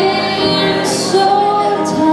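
A woman singing into a microphone through a PA, holding long notes that slide from pitch to pitch, over sustained instrumental backing.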